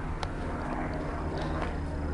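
Steady low rumble with a few faint clicks and taps: handling noise from a handheld camera being carried while walking.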